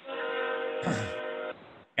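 A steady horn-like chord of several held tones lasting about a second and a half, then cutting off sharply, heard through a call microphone.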